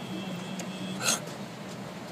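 Steady drone of an airliner cabin, with a constant low hum and a faint high whine. About halfway through comes one short, sharp sound.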